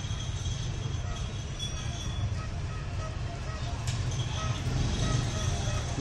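Steady low rumble of outdoor background noise, with faint thin tones higher up.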